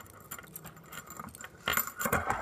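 Metal handcuffs being handled, giving small metallic clicks and clinks, with a louder cluster near the end.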